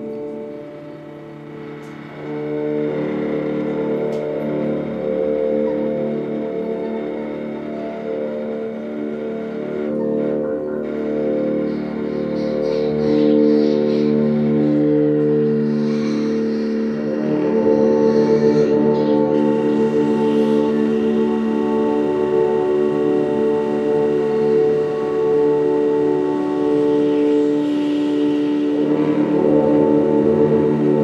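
Live electronic drone music: layered, sustained, horn-like tones held for long stretches. It swells about two seconds in, and the tones shift to a new set partway through, with a faint hiss over the top.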